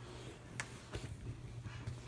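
Faint, soft knocks of cinnamon-roll dough being kneaded by hand on a wooden table, a few light thuds about half a second to a second and a half in, over a low steady hum.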